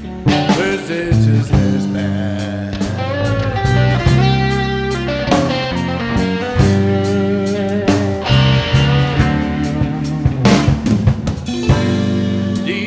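Live blues band playing an instrumental break of a slow blues: a guitar lead over bass and drum kit.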